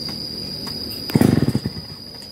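A steady, high-pitched insect trill runs throughout. About a second in, a chainsaw engine pulses loudly and rapidly for about half a second.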